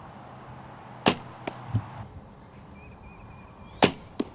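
Two shots from a traditional recurve bow, each a sharp snap of the string on release. After the first, a dull thud follows about two-thirds of a second later as the arrow strikes a 3D foam target.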